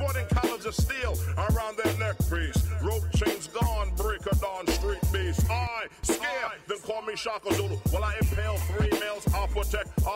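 Hip-hop track: a rapper's verse over a drum beat with a deep bass line.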